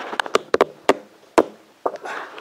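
Irregular taps and knocks, about a dozen in two seconds, from a handheld camera being handled and turned round, with a sharper knock about one and a half seconds in.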